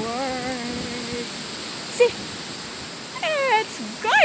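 A woman's voice making drawn-out wordless sounds: a long held note in the first second or so, a short sound at about two seconds, and falling, sliding sounds near the end.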